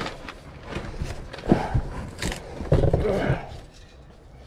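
Crumpled newspaper packing rustling and crinkling against a cardboard box as a wrapped object is lifted out, with a couple of short wordless vocal murmurs about a second and a half and about three seconds in.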